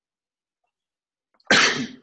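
Near silence, then about a second and a half in a single sharp cough from a person on a video call.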